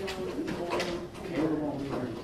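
Indistinct talking from people in the room, with a drawn-out low voiced sound, and light footsteps on the carpeted floor.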